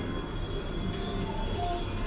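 In-store background music over shop ambience: a steady high-pitched tone with a low hum, and short melody notes starting partway through.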